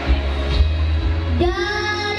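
Backing music over a public-address system. About a second and a half in, a child's voice enters singing one long held note.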